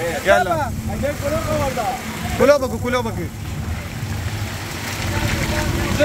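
Auto-rickshaw engine running under way, heard from inside the open cabin as a steady low rumble, with short stretches of people talking over it about half a second in and again about two and a half seconds in.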